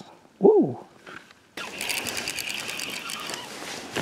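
A short, loud vocal sound that rises and falls in pitch about half a second in. After an abrupt cut about a second and a half in, a spinning fishing reel is cranked to retrieve line: a fast, even run of clicks over a steady gear whine.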